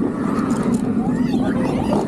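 Bolliger & Mabillard floorless steel roller coaster train running at speed through its elements: a loud, steady roar of wheels on the track mixed with wind, with riders' wavering screams and shouts over it.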